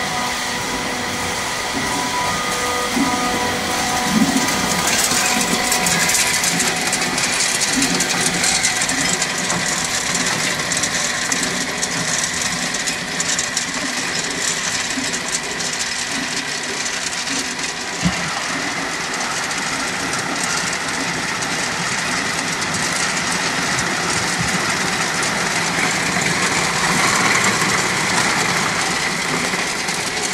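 Tube ice from a tube ice machine clattering continuously as the cylinders pour out during the harvest stage and fall onto a galvanized steel grate and into the ice below. One sharper knock comes about halfway through.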